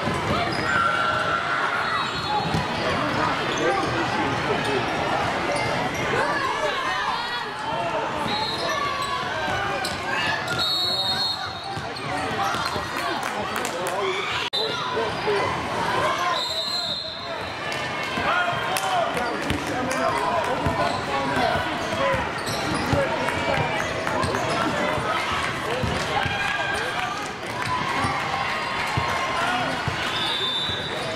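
A youth basketball game in a gym: a basketball bouncing on the hardwood court under constant talking and shouting from players and spectators. Short high referee whistle blasts sound a few times, around a third of the way in, a little past halfway and at the very end.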